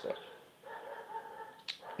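A faint, high, drawn-out animal whine lasting about a second, followed by a short click near the end.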